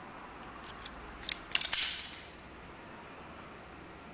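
Hand solar-cable stripper at work on a 3.5 mm² solar cable: a few small sharp clicks of the jaws closing, then a short scraping rasp about two seconds in as the insulation is pulled off.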